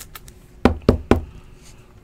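Three quick knocks on a tabletop, about a quarter second apart, as trading cards are handled, with a few faint clicks before them.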